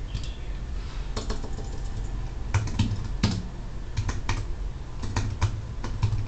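Keystrokes and clicks on a MacBook Air laptop, about a dozen short taps coming unevenly in small clusters.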